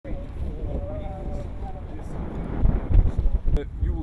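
Wind buffeting the microphone, strongest about three seconds in, with a short sharp click just before the end.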